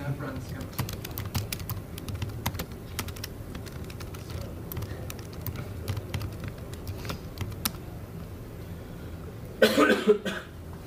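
Laptop keyboard typing: irregular quick keystroke clicks picked up by a lecture-hall microphone over a low room hum. Near the end comes a brief loud burst of a man's voice.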